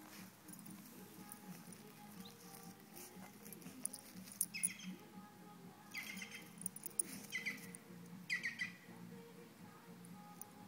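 A Welsh terrier rolling on its back in lawn grass scattered with fallen leaves, its body and coat rubbing the ground in a handful of short, faint rustling scuffs, mostly in the second half.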